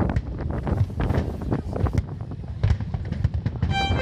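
Fireworks going off: a rapid, irregular string of bangs and crackles with low booms beneath. Just before the end, music with held notes comes in over them.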